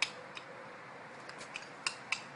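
Short, sharp clicks at irregular intervals, five or six of them in two seconds, over a faint steady background hiss.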